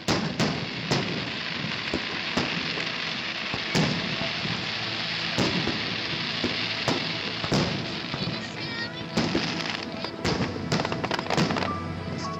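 Fireworks display: aerial shells bursting in a string of sharp bangs, one every half second to second and a half and coming faster near the end, over a continuous rushing noise between them.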